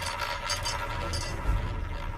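Roulette ball clicking lightly against the pocket dividers of a spinning wooden roulette wheel as it settles into a pocket, faint over room noise; a dull low knock about one and a half seconds in.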